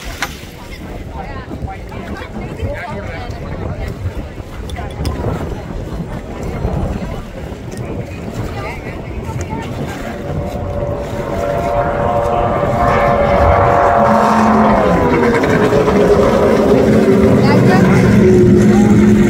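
Racing boat engines at speed, growing louder over the second half as the boats come past, their pitch dropping partway through and then holding steady, with crowd chatter and wind on the microphone before the engines take over.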